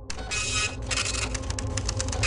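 Machinery running: a steady low hum with loud rasping noise on top that comes in bursts, then breaks into short rapid pulses about halfway through.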